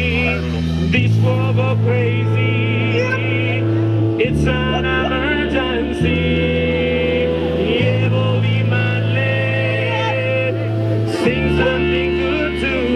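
Live band with electric bass, guitar, drums, trumpet and saxophone playing a faster, ska-style number. The bass holds long notes that change every second or two, under a wavering melody from horns and voice.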